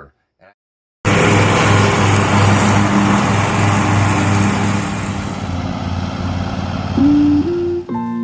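Riding lawn mower engine running steadily under mowing load, with a low, even hum; it cuts in suddenly about a second in. Plucked acoustic guitar music comes in near the end.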